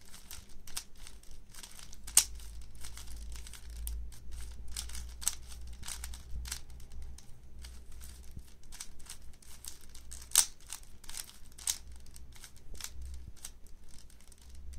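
3x3 plastic puzzle cube being turned by hand during a solve: a fast, irregular run of plastic clicks as its layers are twisted. Two sharper, louder clacks come about two seconds in and about ten seconds in.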